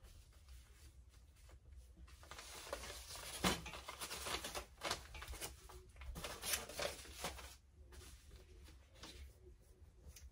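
Faint rustling and crinkling of paper pattern pieces and fabric being handled and shuffled, with a few soft clicks.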